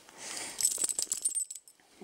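Small metal tags on a dog's collar jingling for about a second as she stirs under the bedcovers, with soft rustling of the bedding.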